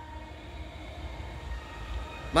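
A low, steady rumble of background noise with a faint hum, and no distinct event.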